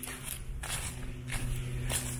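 Footsteps of a person walking at an even pace, four steps about two-thirds of a second apart, over a faint steady low hum.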